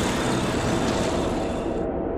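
Tanks moving: a steady, dense rumble of engines and tracks. Near the end the higher part of the sound cuts off sharply, leaving only a low rumble.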